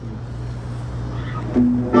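Low steady hum, then live guitar music comes in loudly near the end with several held notes ringing together.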